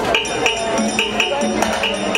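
Live calypso band playing, with bright high notes repeating in a quick rhythm over a steady bass line.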